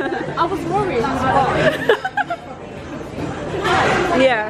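Voices chatting at a restaurant table over the background murmur of a busy dining room, with a louder voice near the end.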